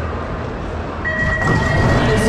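BMX start gate sequence: about a second in, a single steady high electronic tone starts and holds, the long final tone of the start signal. About half a second later the gate clatters down, then bike tyres roll off the ramp over the arena's crowd noise.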